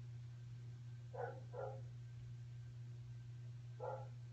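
A dog barking faintly three times, two quick barks about a second in and one near the end, over a steady low hum.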